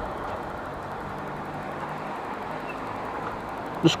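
Honda motorcycle engine running steadily at low speed, a quiet, even hum under road noise.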